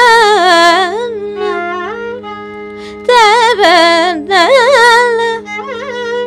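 Carnatic female vocal singing heavily ornamented, gliding phrases in raga Kharaharapriya, with the violin playing softer phrases that follow in the gaps, over a steady drone. Loud sung phrases come at the start, about three seconds in, and again just after four seconds.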